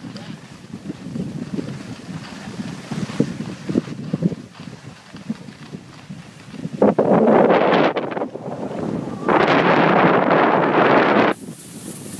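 Wind rushing over the microphone of a camera moving downhill on a ski run. It is low and patchy at first, then comes in two loud rushing stretches, one about 7 seconds in and another from about 9 to 11 seconds, each starting and stopping abruptly.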